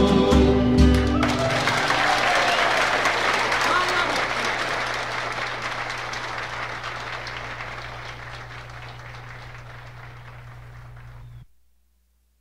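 A live folk band's last chord ends about a second in, then audience applause follows, fading gradually before cutting off abruptly near the end.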